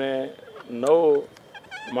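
A man's voice speaking in slow, drawn-out syllables, one long vowel rising and falling in pitch about a second in. A brief high warbling sound comes just before the end.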